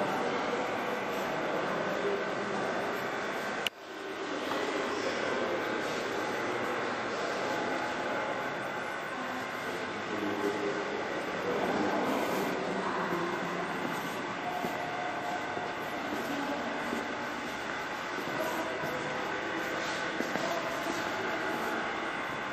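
Steady background noise with faint, indistinct voices in it. A click and a short drop in level come about four seconds in.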